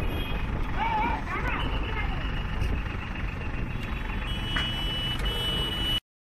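Heavy vehicle engines running with a steady low rumble while people shout in the first two seconds. A steady high-pitched tone, like a vehicle's warning beeper, comes in over the last two seconds.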